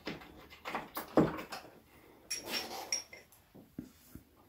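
Brief handling noises from the steel plane iron and its packing being taken out and turned over in the hands: a few short rustles and knocks with a faint high metallic ring about two and a half seconds in.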